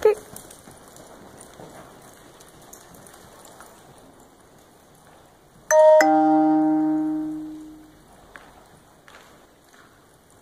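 A two-note chime, a short high note followed by a lower note that rings out and fades over about two seconds.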